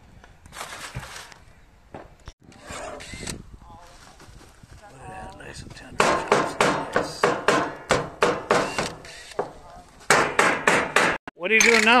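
Meat cleaver chopping a smoked pork roast on a plastic cutting board: sharp chops in quick succession, about three or four a second, starting about halfway through, with a short pause and then more chopping near the end.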